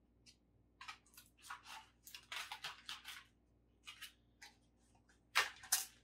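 Crinkling and rustling of a model kit's clear plastic packaging and paper as it is handled, in short irregular bursts, loudest near the end.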